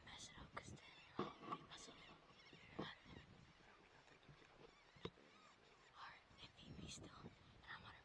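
Faint whispering, with a few scattered soft clicks.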